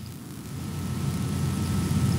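A low, even rumbling noise with no words or distinct events, growing steadily louder over the two seconds.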